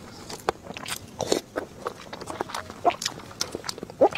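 Close-miked chewing of soft chili-oil eggs, with wet lip smacks and small clicks at irregular intervals.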